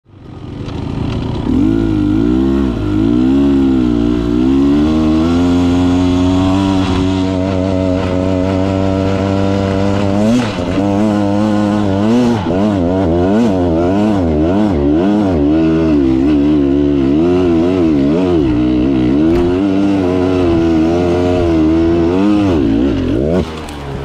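Beta Xtrainer 300 two-stroke single-cylinder dirt bike engine revving hard on a steep loose-dirt hill climb. Its pitch swings up and down quickly as the throttle is worked, with a sharp knock about ten seconds in. The engine drops off near the end as the climb fails.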